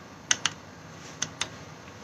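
Two pairs of sharp clicks about a second apart, each pair a key pressed and released, as the angiography display is stepped on to the next image.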